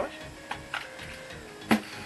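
New makeup brushes being handled: a few light handling noises, then one sharp click near the end.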